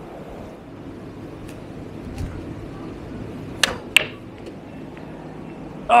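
Steady background noise of an open ship deck, with a few faint clicks and then two sharp clicks in quick succession a little past halfway.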